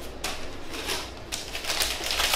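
White tissue wrapping paper rustling and crinkling as a gift is unwrapped by hand, a run of short irregular crackles that grows busier toward the end.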